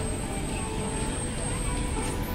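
Outdoor street ambience: a low rumble of traffic and wind, with voices and faint music in the mix and a thin steady high-pitched tone.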